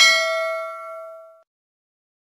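A bell ding sound effect from a subscribe-button animation, as the notification bell is clicked: one struck chime with several ringing overtones that fades out within about a second and a half.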